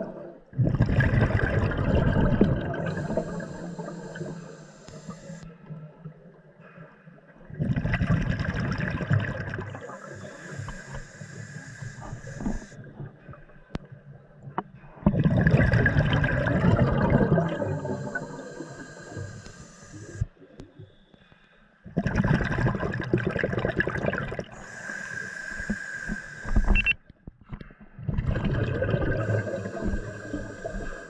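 Scuba diver breathing through a regulator underwater: a loud rush of exhaled bubbles about every seven seconds, five times, each followed by a quieter, hissing inhale.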